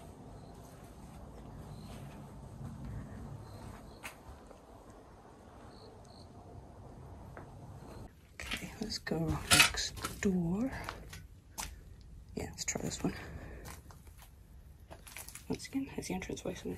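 Footsteps crunching and scraping over rubble, broken plaster and glass littering the floor. They start about halfway in, after a faint stretch of room tone.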